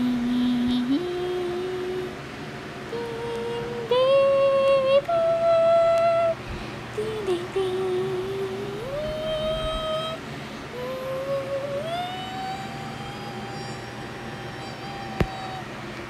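A single voice humming a slow wordless tune of long held notes, sliding up between several of them and ending on one long high note. A sharp click sounds near the end.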